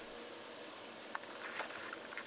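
Blue disposable gloves being pulled onto the hands: faint rustling and crinkling of the thin glove material, with one sharp click a little past halfway.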